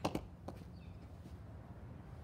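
A few short, light taps in the first half second: the just-hit softball striking the batting net and bouncing. Then only quiet outdoor background.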